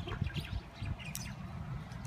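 A few short bird chirps over a low, steady outdoor rumble.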